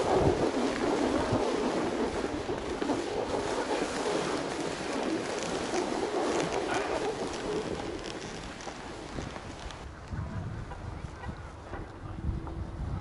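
Skis sliding and scraping over packed snow while wind rushes across the helmet-camera microphone. The sound slowly grows quieter over the last few seconds.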